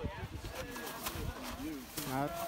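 Faint, muffled voices over a low rumble of wind on the phone microphone, with a single sharp click about a second in.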